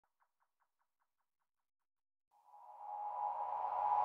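Intro of an electronic dance track: a few faint, evenly pulsing blips fade away in the first second and a half. About two and a half seconds in, a sustained synth pad swells up, with a low bass tone joining it a moment later, and it keeps getting louder.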